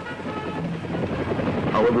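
Helicopter running close by, a steady rush of rotor and engine noise.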